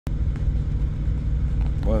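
Steady low rumble of a truck's diesel engine heard inside the cab.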